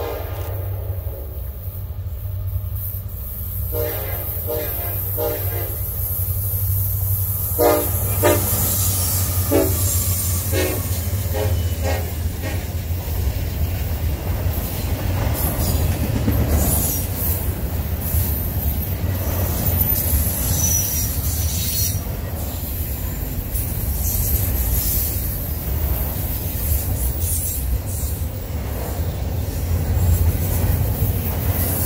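Norfolk Southern freight train's locomotive horn blowing long blasts as the train approaches, then a run of short blasts about eight seconds in. From about halfway, the double-stack container cars roll past with a steady rumble and clatter of wheels on rail, with a brief high wheel squeal around twenty seconds in.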